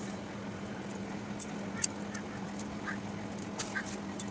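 Dry leaves and stems being plucked by hand, giving a few brief crackles and snaps over a steady low hum.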